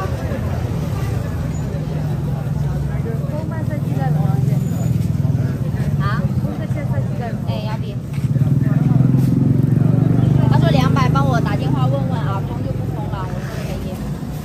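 People talking, partly in Burmese, over a low, steady engine drone that grows louder about eight seconds in and eases again near the end.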